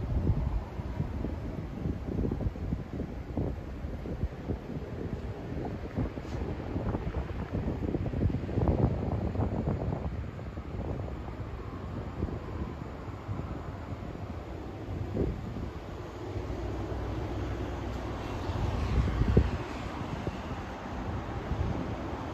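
Wind buffeting the microphone in uneven gusts, over a steady background hum of distant city traffic, with a louder swell near the end.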